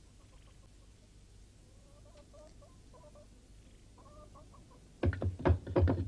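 Faint, wavering whimpers from a cartoon dog, then, about five seconds in, a rapid series of loud wooden knocks and rattles as the dog works at the wooden bar across a door.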